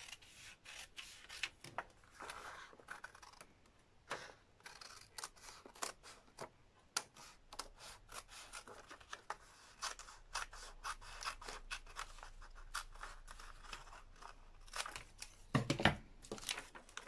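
Scissors cutting through a folded, several-layer paper sleeve pattern along the hem line: a faint, irregular run of short snips with paper rustling. A louder rustle of the paper being handled comes near the end.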